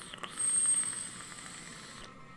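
A draw on a dual-coil rebuildable dripping atomizer fired on a hybrid mechanical mod: a click, then air hissing through the airflow holes with a thin high whistle and a fine crackle of the juice-soaked cotton on the hot coils. The hiss is loudest for under a second, then softens. The vaper calls it a fairly quiet draw.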